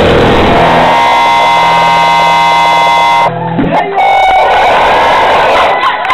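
Very loud live rock band with drums and electric guitars: the full band plays, then holds a ringing chord that cuts off sharply a little over three seconds in. Noisy crowd sound with voices follows.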